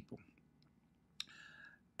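Near silence in a pause between sentences, broken about a second in by a single sharp mouth click and then a faint intake of breath.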